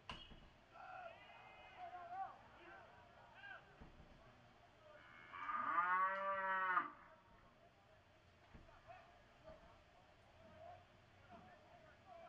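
A long, drawn-out shout from a person in the ballpark, about two seconds, its pitch rising then falling, about five seconds in. Before it, a sharp crack right at the start and a few shorter shouts in the first couple of seconds.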